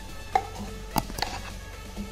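A few sharp taps and clicks of a steel bowl and utensil against a cooking pan as a thick paste is scraped out of the bowl into the pan, two of them close together about a second in.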